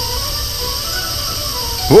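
Steady spraying hiss of a fire extinguisher, laid over faint background music.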